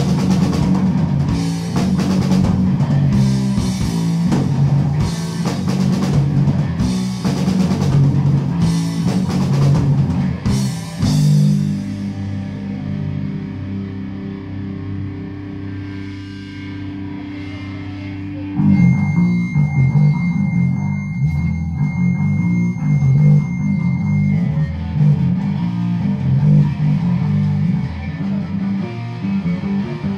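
Live rock trio of electric guitar, bass guitar and drum kit playing loudly. About eleven seconds in, the drums drop out and the guitar and bass hold ringing notes. A few seconds after that, the guitar and bass come back in with a driving riff.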